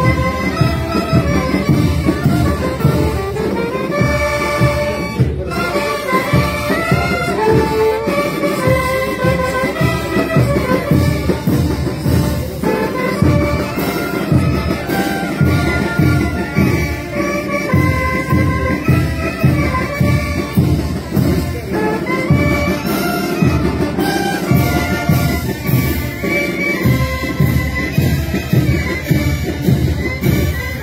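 School marching band playing a march: saxophones and brass carry the tune over a steady drum beat.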